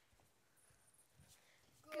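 Near silence with a few faint taps of footsteps on the stage floor. Children's voices begin speaking together right at the end.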